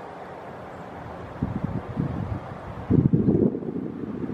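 Helicopter running, with wind buffeting the microphone in gusts from about one and a half seconds in, loudest near three seconds.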